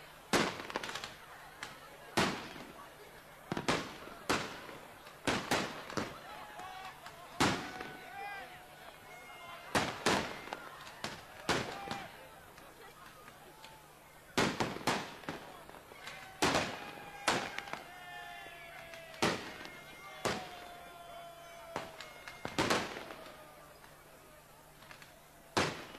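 New Year's fireworks going off: sharp bangs at irregular intervals, roughly one a second and sometimes two close together, each with a short fading tail. Voices can be heard faintly between the bangs.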